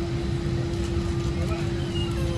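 Airliner cabin noise heard from inside the cabin: a steady low rumble from the engines and airflow with a constant mid-pitched hum, and faint voices in the background.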